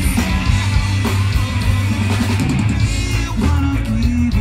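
A live rock band with a reggae feel playing: drums, bass and electric guitar, with some singing.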